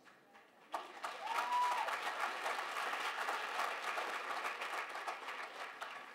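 Audience applauding, starting abruptly about a second in and easing off slightly near the end, with one short high voice call over it early on.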